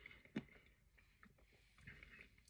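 Near silence: room tone, with one faint click a little under half a second in.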